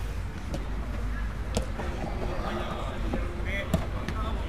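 Football being kicked on an artificial-turf pitch: about three sharp thuds of the ball, with players' voices calling in the background.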